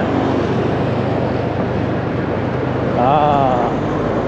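Steady rush of road traffic and wind heard while riding along a city road, with a low engine hum underneath. A brief voice cuts in about three seconds in.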